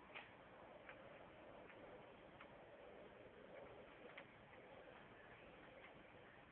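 Near silence: faint background hiss with a few soft, irregularly spaced clicks.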